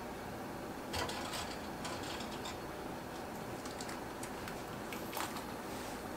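A canning jar lifter clicking and clinking against glass jars and the steel canner pot as jars of jam are lifted out of the water bath. A few sharp clicks, the loudest about a second in and another just after five seconds, over a steady hiss.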